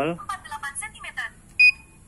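Homemade talking ultrasonic wristwatch aid for the blind: its mini speaker gives a thin, tinny voice prompt, then a single short high electronic beep about a second and a half in. The single beep is the device's signal that the mode button press has registered and it is switching mode.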